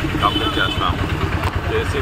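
A man speaking to reporters over a steady low rumble of road traffic.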